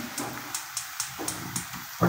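Food frying in a steel kadai: a soft sizzle, with a steel spoon clicking and scraping against the pan several times in quick succession.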